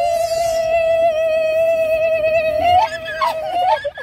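A woman's long held high-pitched squeal while sliding down a metal tube slide, one steady note that wavers and breaks up near the end.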